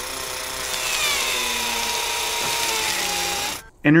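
Motorized drill whirring with a hiss, its whine falling slowly in pitch, then cutting off suddenly shortly before the end. It is the sound given to the Curiosity rover's arm-mounted drill as it works against the rock.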